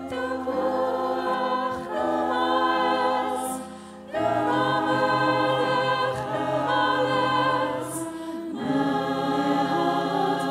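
Mixed choir of men's and women's voices singing a musical-theatre song in harmony, in held phrases that break briefly about four seconds and eight and a half seconds in.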